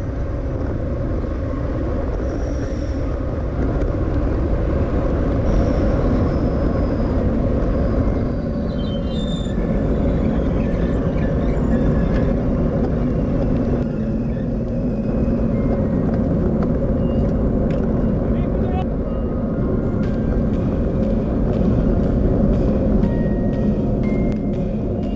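Steady rush of wind over the microphone of a bike-mounted GoPro riding at speed in a group, mixed with the hum of road tyres on asphalt.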